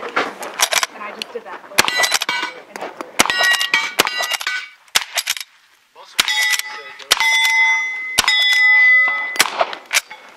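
Reproduction Winchester 1866 lever-action carbine firing a string of shots, several of them followed by the ringing clang of a hit steel target. The firing pauses briefly about five seconds in, then picks up again.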